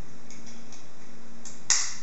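One sharp click near the end as the stroller's five-point harness buckle snaps shut, after a few faint taps of the straps being handled.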